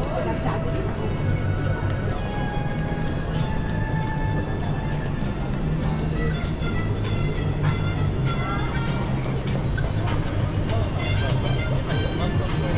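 City street noise with music playing, voices of people passing and a steady low rumble of traffic.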